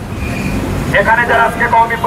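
Low background rumble for about a second, then a man's voice through a handheld megaphone.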